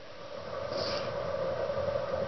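Faint handling sounds of thin solder-coated tabbing wire being drawn off a small spool and laid along a plywood board, over a steady low hum and hiss.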